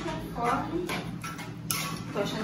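Low, indistinct voice along with the light scraping and tapping of a plastic utensil stirring pasta in a metal saucepan, with one sharper tap near the end.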